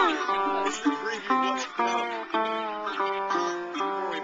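Acoustic guitar played up close, single notes and chords plucked and left ringing, a few of them sliding in pitch.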